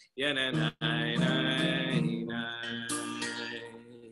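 A man singing a prayer song to acoustic guitar accompaniment, the last phrase held and fading out near the end.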